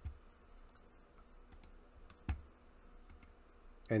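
A few short computer mouse clicks, the loudest about two seconds in, over a faint low hum.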